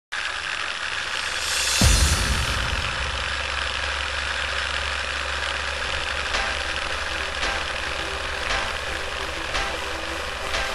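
Old-film countdown sound effect: a film projector running, with a steady crackly hiss and a low hum. A deep thud comes about two seconds in, and from about six seconds on there is a sharp click roughly once a second, in step with the countdown.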